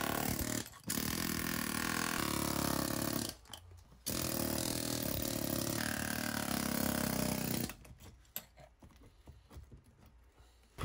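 Pneumatic air hammer with a chisel bit chipping a concrete floor, in three runs of rapid hammering: a short one, one of about two and a half seconds, and after a brief pause one of about three and a half seconds that stops well before the end. Faint knocks of loose rubble follow.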